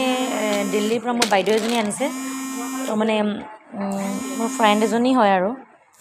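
A singing voice with long held, wavering notes and sliding pitch, with a buzzy edge to the sound.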